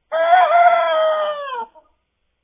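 A young cockerel crowing: one long crow of about a second and a half that lifts a little at first and slides down in pitch as it ends.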